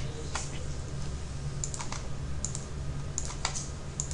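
Several light clicks of a computer mouse at irregular intervals, over a steady low hum.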